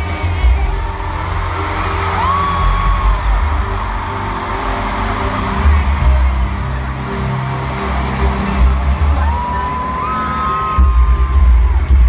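Live pop music with heavy, pulsing bass played loud through an arena sound system, heard from within the crowd on a phone microphone. A woman's voice sings long held notes over it: one rises about two seconds in, and another is held from about nine seconds until near the end. The crowd cheers and whoops throughout.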